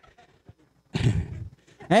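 A man's voice in a church hall: a short breathy laugh about a second in, then a rising, drawn-out "amen" beginning near the end.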